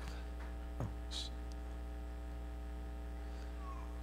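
Steady electrical mains hum in the sound system, unchanging throughout, with a faint short hiss about a second in.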